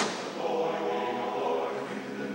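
Large men's barbershop chorus singing a cappella, many voices holding sustained chords in close harmony. A short sharp click sounds right at the start.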